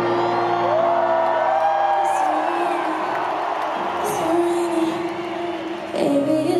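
Live band music played through a stadium PA, recorded from among the audience, with the crowd whooping and cheering over it.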